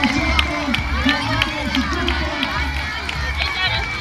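Busy outdoor crowd of spectators: many people talking at once, with children's high voices calling out over it, an adult voice among them and music faintly in the background.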